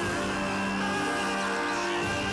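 Background electronic music of steady, sustained tones.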